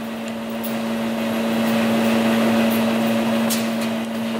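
Compressed air hissing steadily through a Snap-on leak-down tester into a cylinder of a 4G63 engine, over a constant low hum. The cylinder is holding well, at about 3% leakage.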